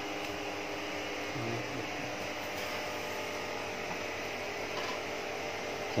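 Steady background hum and hiss, with no distinct knocks or clicks.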